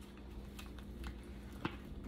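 Handling of a silicone mold and a cured resin piece while unmolding: a few faint scattered clicks and taps, the sharpest about one and a half seconds in, over a steady low hum.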